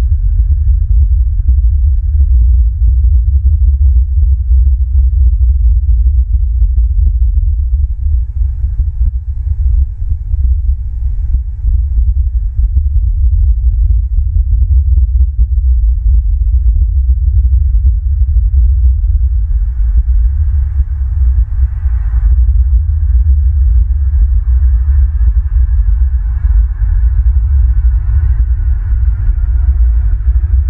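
Wind buffeting an outdoor camera microphone: a loud, irregularly pulsing low rumble. In the second half a vehicle passes on a nearby road.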